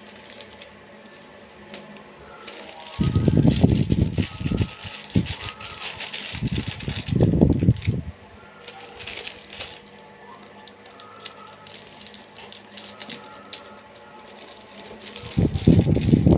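Plastic courier mailer bag rustling and crinkling as it is handled and turned over, with dull handling thumps; loud bursts about three and six seconds in and again near the end as scissors are brought to it.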